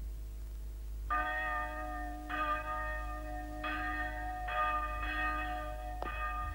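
A church bell tolling, starting about a second in, with about four strokes a little over a second apart, each ringing on into the next.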